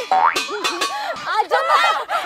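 A cartoon-style 'boing' sound effect rises quickly in pitch just after the start, then women's voices chatter excitedly over it.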